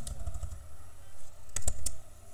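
Computer keyboard keys being typed: a few light keystrokes at the start, then a quick run of louder key clicks near the end.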